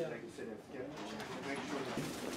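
Faint background voices talking in a shop, low and indistinct under the room's ambience.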